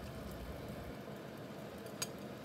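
Faint, steady sizzling hiss of an onion-and-water sauce simmering in a frying pan.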